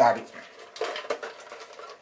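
Faint plastic clicking and clatter from a toy dart blaster being handled as its magazine is worked at, after a word of speech at the start.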